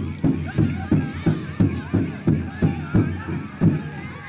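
A large pow wow drum struck in steady unison beats, about three a second, with the drum group's singers' voices wavering high above it.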